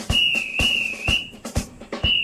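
A whistle blown in one long, slightly wavering blast lasting about a second and a half, over the song's marching drum beat.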